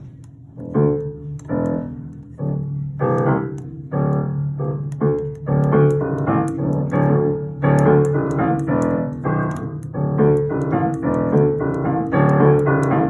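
An acoustic piano being played: a quick run of struck notes and chords, several a second, starting about a second in and going on without a break.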